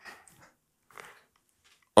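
Faint, brief handling sounds of a playing card being drawn from a deck and lifted: a soft rustle just after the start and another small sound about a second in.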